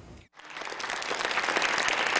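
Audience applauding, starting abruptly after a brief dead gap and swelling over about a second into steady clapping.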